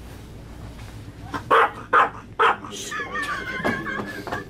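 Three short, loud shouts from a person, about half a second apart, followed by a wavering high-pitched voice held for about a second.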